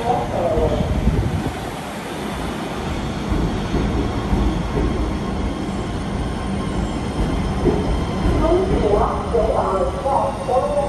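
New York City Subway R211T prototype train rolling into the station alongside the platform and slowing to a stop, a steady low rumble of wheels and running gear on the rails.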